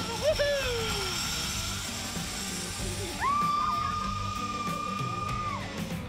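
Background music, with a short falling whoop just after the start and then, from about three seconds in, a long steady high-pitched yell that lasts about two and a half seconds.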